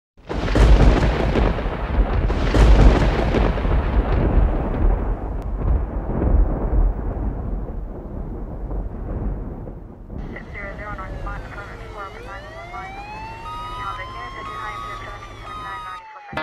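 Produced intro sound effects: a deep rumbling noise with two loud hits in the first three seconds, slowly dying away. From about ten seconds in, sweeping electronic tones dip and then rise.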